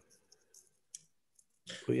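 A few faint, scattered clicks over near silence, the clearest about a second in; a man starts speaking just before the end.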